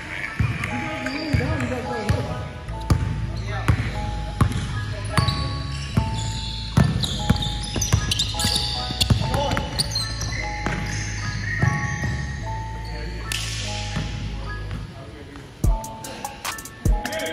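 Indoor basketball game: the ball bouncing on a hardwood court in sharp knocks and indistinct voices of players, over background music with a steady bass that drops away shortly before the end.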